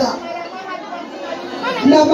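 Chatter of several women's voices in a room, in a lull between phrases of an amplified lead voice, which comes back in near the end.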